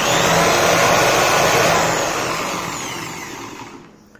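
A corded 350-watt electric drill runs at full speed, spinning the armature of an old mixer's universal motor that has been converted into an AC generator. After about two seconds the pitch falls and the sound fades as the drill and the coupled motor coast down toward a stop.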